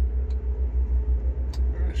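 1981 GMC half-ton pickup's engine idling with an even, pulsing low rumble, heard from inside the cab, with a couple of faint clicks.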